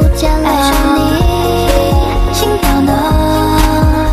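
Mandarin pop-rap song at its sung chorus: a melodic vocal line over a hip-hop beat whose deep kick drums fall in pitch on each hit.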